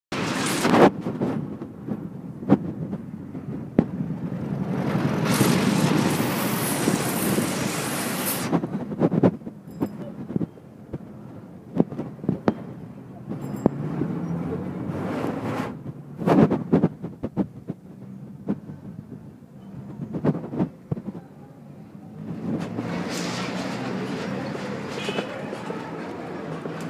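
Street sound heard from a moving bicycle taxi: scattered sharp knocks and rattles over a low rumble, with a louder rush of noise from about five to eight seconds in and again near the end.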